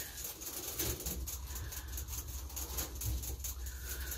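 Quiet room sound dominated by a low steady hum, with a few faint higher sounds over it.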